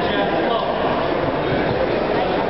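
Steady murmur of many indistinct voices from a crowd of spectators, with no single voice standing out.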